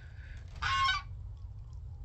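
Domestic goose honking once, a short high call about halfway through, with a fainter call near the start. Wind rumbles on the microphone underneath.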